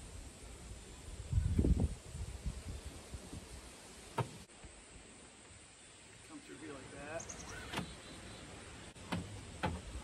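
Bungee cord being worked through the deck fittings of a plastic kayak: a short low rumble of handling about a second and a half in, then a few sharp clicks of cord and fittings against the hull, one about four seconds in and two near the end.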